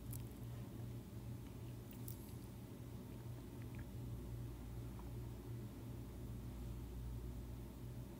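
Faint steady low electrical hum over quiet room tone, with a couple of faint clicks about two seconds in.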